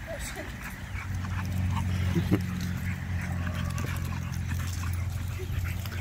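American Bully dogs playing rough, giving short yips and whines, over a steady low hum.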